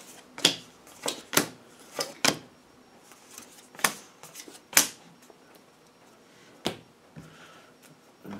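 Tarot cards being handled and shuffled by hand: a string of sharp, irregular card snaps and taps, several close together in the first couple of seconds, then a few more spaced out, the loudest about halfway through.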